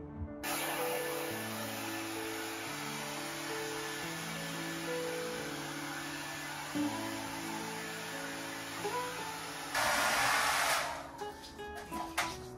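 Hair dryer blowing steadily, starting abruptly about half a second in, over soft background music; near the end it gets louder for about a second, then cuts off.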